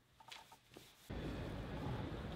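Near silence with a couple of faint small sounds, then, about halfway through, a steady outdoor background rumble of city noise starts suddenly.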